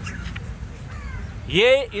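A crow caws once, loudly, about one and a half seconds in, over low outdoor background noise.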